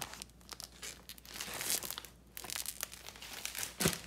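Plastic packaging crinkling and rustling as it is handled and pulled open, in short crackly bursts, with a single dull thump just before the end.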